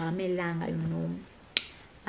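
A single sharp finger snap about one and a half seconds in, after a woman's voice trails off.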